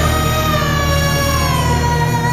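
Heavy rock band playing, with a long held vocal note sung over a sustained low chord. The note slides slowly down in pitch after about a second.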